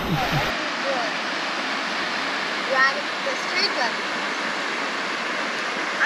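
Steady rush of water from small waterfalls spilling into a rock pool.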